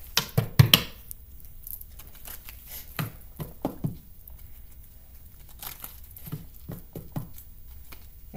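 Tarot cards being shuffled and handled by hand: a quick run of sharp card snaps about half a second in, then scattered taps and rustles of the deck.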